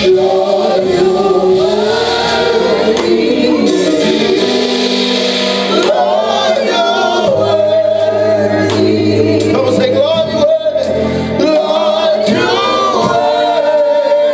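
Live gospel praise-team singing: a male lead voice with female backing singers on microphones, over long held low accompaniment notes.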